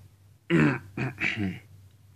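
A person clearing their throat in three short coughs: a loud first one, then two shorter ones, about a second in all.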